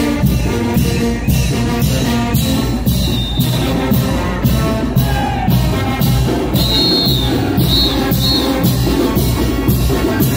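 A brass band plays fast chinelo dance music with a steady beat.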